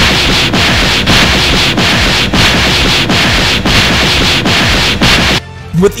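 Anime fight sound effect for two powers clashing: a loud, dense hiss-like noise that pulses about twice a second and cuts off suddenly near the end.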